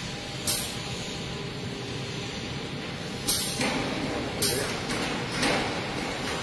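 Air-powered grease gun pumping grease into a rubber track's tensioner, giving four short hisses of air over a steady background hum.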